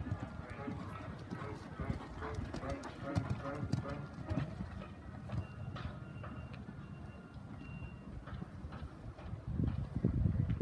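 Horse cantering a show-jumping course on sand footing, its hoofbeats coming in uneven thuds. Indistinct voices can be heard in the first few seconds.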